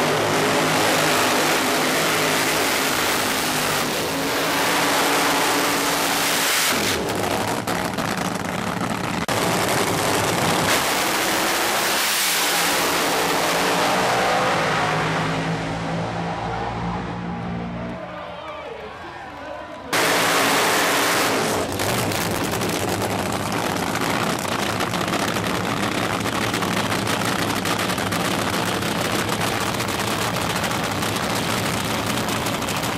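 Supercharged nitro-burning funny car V8 engines running loud in a series of cut-together clips. Around the middle the pitch falls over several seconds as a car revs down or passes. The sound changes sharply at cuts about seven, nine and twenty seconds in.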